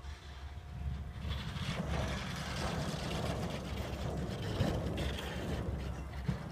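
Unpowered Schweizer SGS 2-33 glider rolling out over grass after touchdown: a steady rushing rumble from its wheel and skid on the turf, mixed with wind on the microphone, and a few light bumps.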